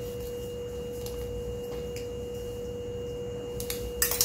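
A steady pure tone hums without change over a low rumble, with a few faint light clicks.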